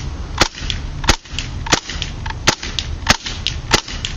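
KWA MP7 gas-blowback airsoft submachine gun, running on propane, firing six single shots on semi-automatic, about two-thirds of a second apart. Each shot is a sharp crack.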